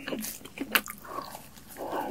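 Close-miked eating mouth sounds: wet lip smacks and chewing clicks, with a bite into the food near the end.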